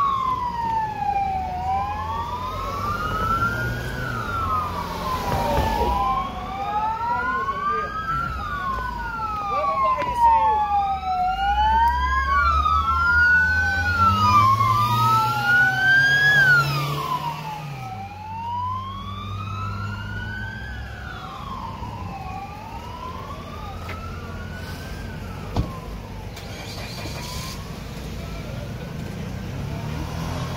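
Police car sirens wailing in slow rises and falls of pitch, two of them overlapping for a stretch in the middle, fading out about two-thirds of the way through. Midway a vehicle engine revs up, then drops off.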